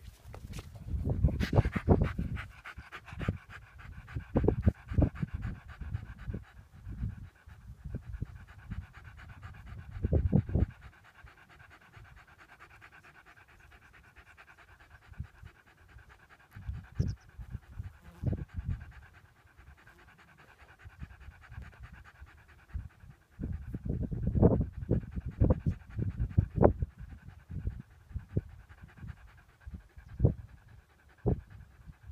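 A dog panting hard close to the microphone, in bouts of quick breaths with quieter pauses between; the loudest bouts come at the start and again about two thirds of the way through.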